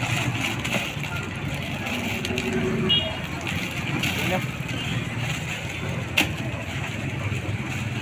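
Indistinct voices over steady outdoor street noise, with the rustle of non-woven bags being handled and filled in cardboard boxes; a sharp click about six seconds in.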